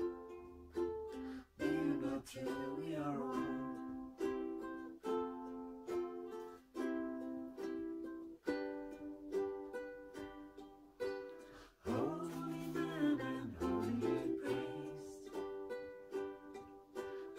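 Two ukuleles playing together: strummed and picked chords that change every second or two, in an instrumental passage of a song.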